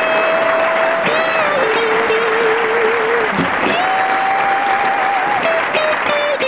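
Crowd applause with long held musical notes over it that slide into pitch and waver.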